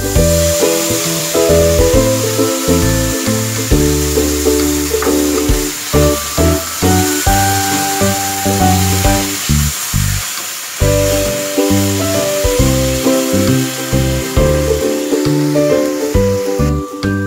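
Instrumental keyboard music plays throughout, over a steady sizzling hiss of diced tomatoes frying in a hot pan of sautéed vegetables.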